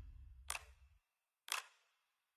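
Trailer sound effects: a faint low rumble dying away in the first second, cut by two short, sharp clicks about a second apart.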